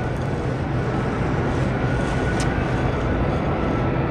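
Steady background hum and hiss of a grocery store, even throughout.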